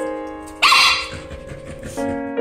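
A Shiba Inu gives one short, loud bark about half a second in, over background keyboard music with held notes.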